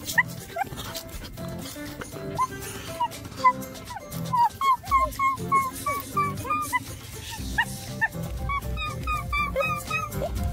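A tame fox whining in short, high chirping calls, several a second, over background music.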